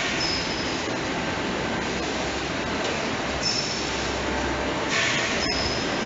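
A beer bottling and labelling line running, with steady mechanical conveyor and machine noise and a couple of short hisses about halfway through and near the end.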